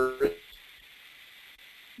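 A man's speech trails off about half a second in, then a pause with only a faint, steady hiss.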